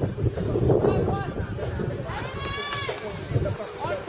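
Wind buffeting the microphone, with one long, high-pitched shout from a spectator about two seconds in.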